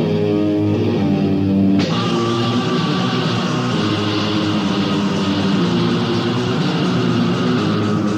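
Death metal band playing from a demo recording: a fast riff on distorted electric guitar with bass underneath. About two seconds in, the sound grows denser and brighter as the upper range fills in.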